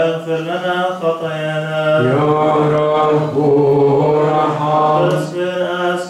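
Male voices chanting a drawn-out, melismatic litany response in Coptic Orthodox style, long notes held on a steady pitch. The sound grows fuller about two seconds in.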